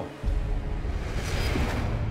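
Tense dramatic background music with a heavy, low rumbling bed, swelling in about a quarter second in after a voice cuts off.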